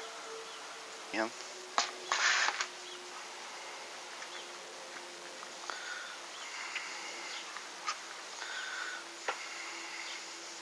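A faint steady low buzzing hum, with a loud clatter of a metal spatula and pan lid against a frying pan about two seconds in and a few light clicks later.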